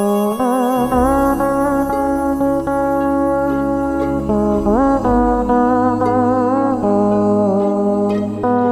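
Đàn bầu, the Vietnamese monochord, playing a slow melody: plucked notes that waver with vibrato and slide between pitches as the rod is bent, with a clear upward glide about halfway through.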